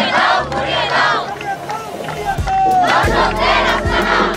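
A crowd of protesters chanting a slogan together in loud bursts, two near the start and two more from about three seconds in, with hands clapping in time.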